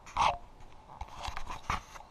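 Handling noise: a short, loud rush of noise just after the start as a barefoot person steps off a bathroom scale, then a run of small knocks and clicks as the camera is picked up off the floor and turned toward the scale.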